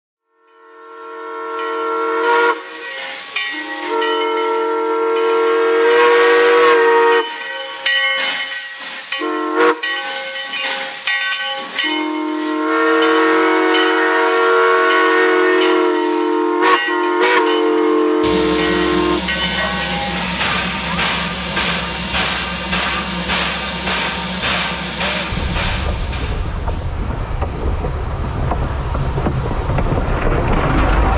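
A steam locomotive's chime whistle blows several long blasts over a steam hiss. From a little past halfway, the locomotive chuffs in an even rhythm.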